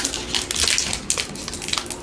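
Plastic wrapper of a trading card pack crinkling and tearing as hands pull it open, in a run of irregular crackles.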